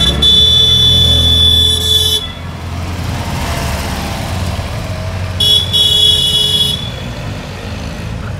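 Car horns honking twice, a held toot of about two seconds at the start and a shorter one about five and a half seconds in, as classic Fiat 500s drive past with their small engines running underneath.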